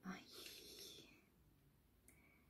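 A woman's soft, breathy sigh lasting about a second, in hesitation, then near silence.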